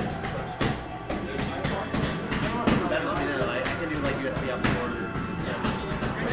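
Wordless improvised vocal sounds into a microphone, punctuated by irregular sharp clicks and knocks.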